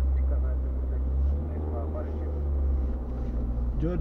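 Low, steady rumble of a car's engine and road noise heard inside the cabin as the car rolls slowly, with faint talk over it.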